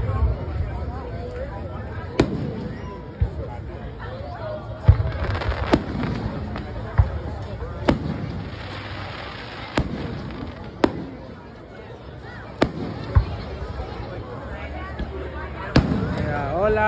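Aerial fireworks going off: about a dozen sharp bangs at irregular intervals, a few of them much louder than the rest, over the chatter of a crowd.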